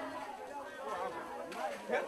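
Faint, indistinct voices talking on a film's soundtrack, played over a lecture hall's loudspeakers.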